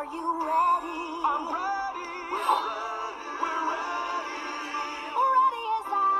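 A song from an animated show playing through a laptop's small speakers: sung notes that glide and waver over music, thin with no bass.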